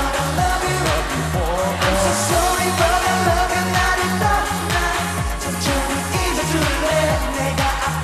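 Live K-pop dance-pop performance: a male lead vocal sung into a handheld microphone over a pop backing track with a steady, even bass beat.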